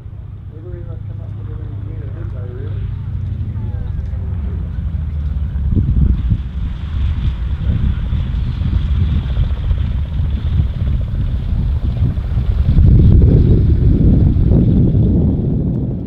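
A de Havilland DHC-2 Beaver's nine-cylinder Pratt & Whitney R-985 radial engine and propeller run with a steady drone as the aircraft comes in low and rolls on a grass strip. The sound swells to its loudest about three-quarters of the way through. There is wind on the microphone.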